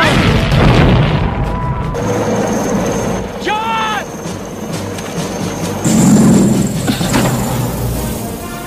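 Action-film battle soundtrack: a music score under loud booms, one at the start and another about six seconds in, with a short cry about three and a half seconds in.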